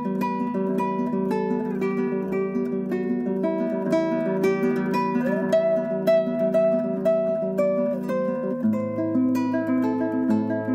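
Nylon-string classical guitar played fingerstyle: a quick run of plucked, arpeggiated notes over a ringing bass, with a higher melody note held for a couple of seconds in the middle and a change of chord and bass note a little before the end.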